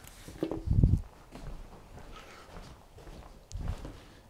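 Footsteps on a hard floor: a low thud about a second in and another near the end.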